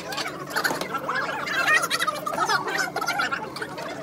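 Several people talking over one another at once in a busy room, a jumble of voices that is loudest around the middle.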